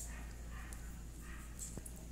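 Faint handling noises and a light click as a coiled USB charging cable is unwound by hand, over a low steady hum.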